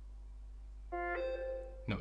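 Samsung Galaxy M15 5G phone speaker playing a notification-tone preview: a short electronic chime of two notes, the second higher and held for about half a second, starting about a second in.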